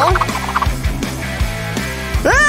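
Background music with a steady beat. In the first half second or so, a quick warbling sound effect sits over it.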